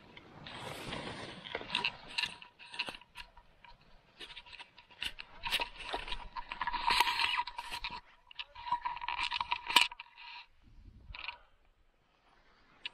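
Skis scraping over packed snow, mixed with irregular sharp clicks and rattles from a handheld camera pole. A faint steady high tone runs under it and stops a little before ten seconds in.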